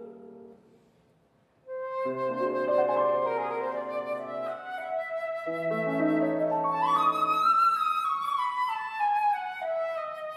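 Flute and grand piano playing classical chamber music: after the mezzo-soprano's last note fades and a brief near silence, the flute enters alone about a second and a half in with piano chords joining, its melody climbing to a high point about two-thirds through and then stepping back down.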